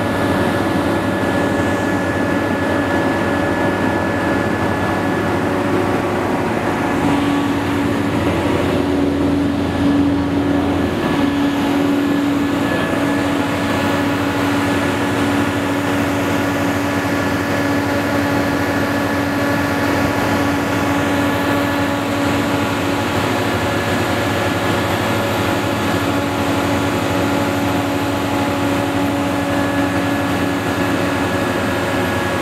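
Terex RT665 rough-terrain crane running steadily, its engine and hydraulics making a continuous drone. A stronger humming tone comes in about seven seconds in and holds.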